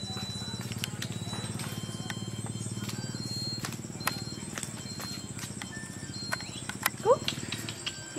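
Zoom motor of a Canon PowerShot SX30 IS camera running as the lens zooms in, a steady low whir picked up by the camera's own microphone, stopping just before the end. Scattered small clicks and a couple of short rising chirps come near the end.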